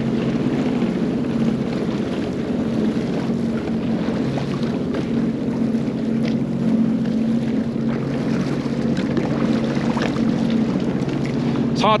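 Sea-Doo personal watercraft engine idling with a steady low hum, under a constant wash of water and wind noise.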